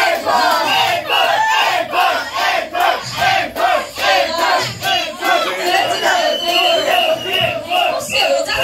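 A woman's voice through a handheld microphone, chanting or shouting short rhythmic calls, a few a second, with crowd voices behind it.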